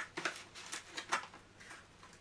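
A few light, scattered clicks and taps of small parts being handled while a rod is fitted into a metal frame part of a kit-built 3D printer.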